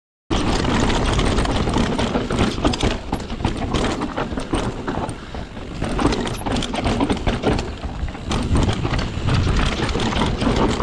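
Mountain bike descending a dry, rocky dirt trail, heard from a body-mounted action camera: tyres rolling over gravel and stones, and the bike rattling and clattering over bumps, over a constant low rumble. The sound cuts in abruptly about a third of a second in.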